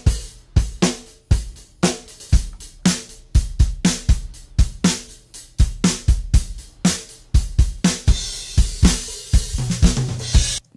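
Playback of a multitrack drum-kit recording: kick, snare, hi-hat and cymbals playing a steady groove. It starts unprocessed, and partway through Analog Obsession mixing plugins, including the SSQ console-style EQ, are switched on.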